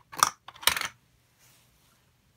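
Hard plastic clicking and rattling in two quick bursts, about half a second apart, as a toy juice dispenser and its plastic cup are handled.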